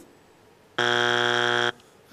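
Game-show wrong-answer buzzer: one harsh, steady buzz just under a second long, starting a little under a second in and cutting off abruptly. It marks the answer as not on the board, a strike.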